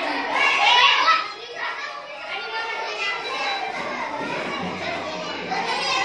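A crowd of schoolchildren talking and calling out over one another, loudest in the first second, then settling into a lower steady hubbub of children's voices.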